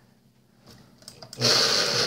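Electric drill mounted in a drill stand, switched on about 1.4 seconds in: its motor and chuck run loudly and steadily to the end. A few light clicks come just before.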